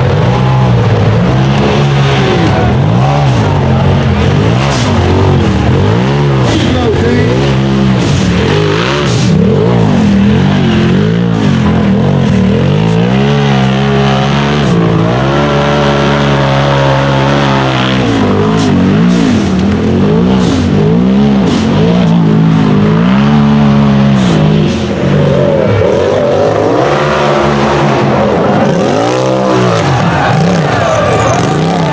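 Side-by-side UTV engines revving hard under load while climbing a steep dirt hill, the pitch rising and falling again and again every second or two as the tyres spin and throw dirt.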